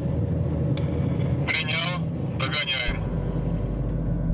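Steady engine and road noise of a moving car, heard inside the cabin. Two brief bursts of voice come about one and a half and two and a half seconds in, and a low, sustained music tone enters about three seconds in.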